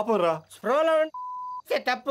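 A single steady, high censor bleep, about half a second long, laid over the dialogue a little past the middle and blanking out a word.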